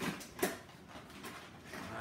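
Cardboard product box being pulled open by hand: two short, sharp scrapes or knocks in the first half second, the second louder, then quieter handling noise.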